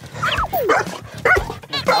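A golden-coated dog giving short yelps and whines that fall quickly in pitch, several in a row, as it is greeted.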